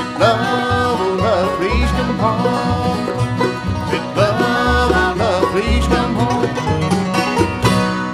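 Bluegrass band playing an instrumental break with banjo, acoustic guitars, mandolin and upright bass, the banjo prominent.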